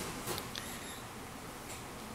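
Quiet room with a few faint light ticks and taps in the first second or so, from a nail polish brush and a plastic nail swatch wheel being handled while a coat of polish goes on.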